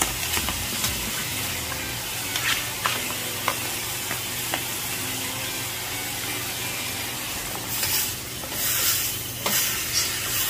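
Jumbo squid sizzling in hot oil in a pan as it is stir-fried, with sharp clicks of a utensil against the pan now and then. The sizzle rises in louder surges near the end.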